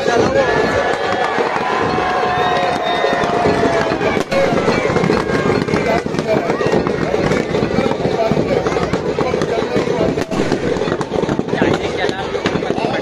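Firecrackers inside a burning Ravana effigy crackling and popping in a dense, continuous string of sharp cracks, over the chatter of a crowd.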